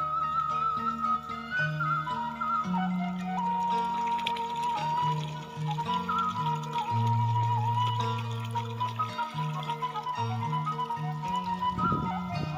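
Sundanese kecapi suling music: a bamboo suling flute holding long, wavering melody notes over lower plucked kecapi zither notes.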